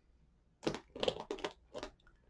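Hands pressing and patting a diamond painting down onto a glued artist canvas. It gives a quick, quiet run of short clicks that starts about half a second in.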